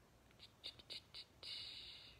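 A fingertip tapping a phone's touchscreen four times, quick and faint, then rubbing against it for about half a second, picked up by the phone's own microphone.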